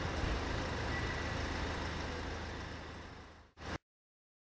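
Outdoor street ambience: a steady low hum and hiss, typical of traffic in the distance. It fades out over about three seconds, with a brief burst of sound just before it drops to silence.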